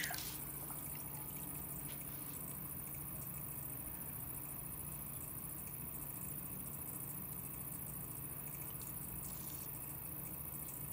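Electric potter's wheel running with a steady low hum while a wet sponge is held against the rim of a spinning clay plate, giving a faint wet rubbing.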